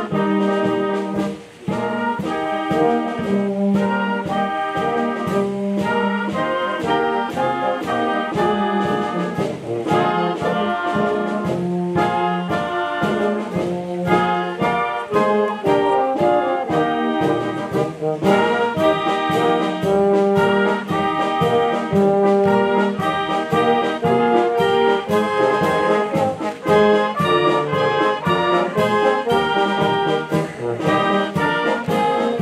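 Youth wind band (flutes, clarinets, saxophones, trumpets and low brass) playing a march with a steady beat, with a brief break in the music about a second and a half in.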